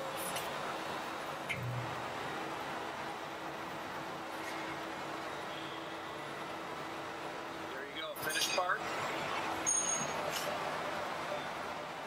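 Soundtrack of a hydroforming demonstration video played back over a hall's speakers: steady machine noise with a faint constant hum. A man's voice speaks briefly about eight seconds in.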